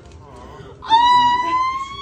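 A woman's long, high-pitched scream of delight, starting about a second in and held on one note that rises slightly.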